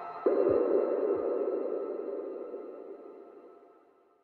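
Closing seconds of a psytrance track. A last noisy swell hits about a quarter second in over a few final kick drums, then a long tail with faint lingering synth tones fades out steadily to near silence.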